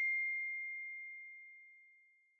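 A single bell-like ding, struck just before this moment, ringing as one clear high tone that fades away over about a second and a half, with its higher overtones dying out first.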